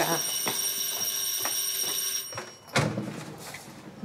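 Electric doorbell ringing with a steady high tone that stops about two seconds in, followed near the end by the door being opened.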